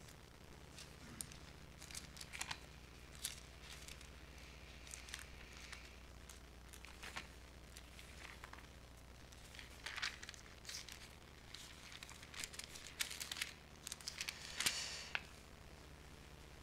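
Thin Bible pages rustling and crinkling as they are turned, in faint scattered bursts that bunch up around ten seconds in and again near the end, over a low steady hum.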